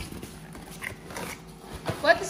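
Cardboard box flaps being pulled open by hand: faint scraping and rustling, with a soft thump near the end.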